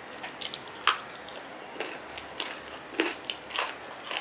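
A person chewing a mouthful of chicken biryani eaten by hand: irregular sharp mouth smacks and clicks, the loudest about a second in.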